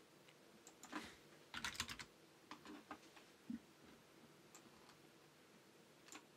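Faint clicks and taps of a computer keyboard and mouse: a few clicks, a quick flurry about a second and a half in, then scattered single clicks.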